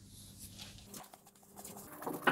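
Faint soft taps and handling sounds of hands working a floured ball of naan dough on a countertop, over a low steady hum.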